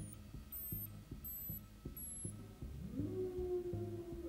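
Electronic synthesizer music: a low, throbbing pulse at about three beats a second under a faint steady drone, with a tone that glides upward about three seconds in and is then held.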